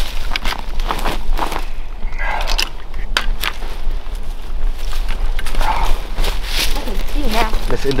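Footsteps and rustling through dry leaves and brush, an irregular run of crackles and crunches, with faint muffled voices in the background.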